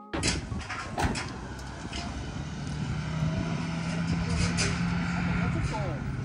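Pit-lane ambience: a car engine running with a steady low hum through the middle seconds, over voices and a few sharp knocks.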